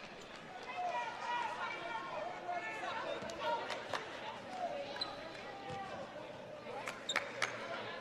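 Court sound during live basketball play: a basketball bouncing on the hardwood floor and players' voices calling out, with a cluster of sharp bounces near the end.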